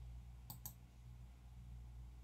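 Computer mouse button clicked: two quick, faint clicks close together about half a second in, over a steady low hum.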